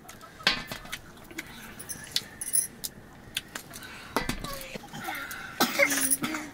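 Scattered light clinks and taps of steel bowls and plates during a meal on the floor, with quiet voices in the second half.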